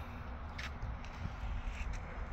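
Quiet outdoor background with a low rumble and a few faint footsteps.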